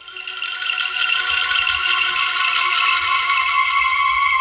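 Dramatic background music cue that swells in over about a second: a dense rattling shimmer over several sustained high synth tones, held steady.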